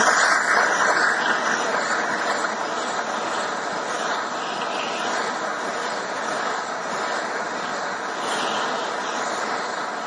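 Gas torch flame hissing steadily, a little louder in the first second. It is heating an aluminium piston so that its interference-fit piston pin will slide in.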